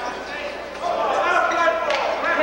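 Voices of players and spectators in a gymnasium during a basketball game, with a basketball bouncing on the court floor and a sharp knock near the end.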